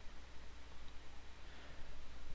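Quiet room tone: a steady low hum and faint hiss from the recording microphone, with no distinct sound events.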